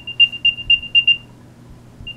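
Apple AirTag's built-in speaker playing its play-sound alert, set off from the Find My app: a quick run of about six high chirps on one pitch, growing louder, then stopping about a second and a half in.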